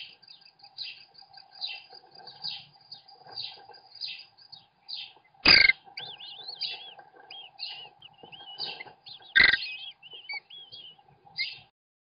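American kestrel nestlings begging while being fed, short high calls repeated two or three times a second, then wavering, chittering notes. Two loud knocks cut in, about halfway through and again four seconds later.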